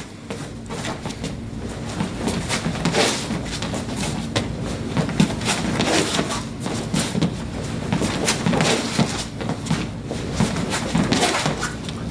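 Footsteps and shuffling feet of two people stepping and turning on a training floor, a run of soft irregular steps and scuffs over a low room hum.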